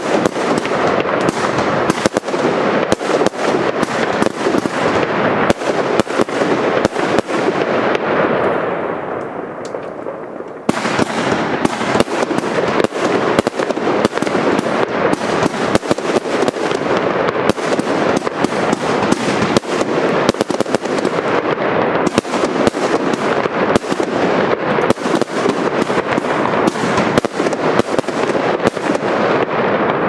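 Pyroland Pycoon 100-shot firework cake firing: a dense, continuous run of sharp pops and crackling bursts. It eases off around eight to ten seconds in, then starts again abruptly and carries on at full pace.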